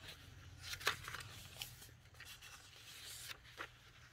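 Soft rustles of the vintage paper pages of a handmade junk journal being turned and handled, the loudest about a second in, over a faint steady low hum.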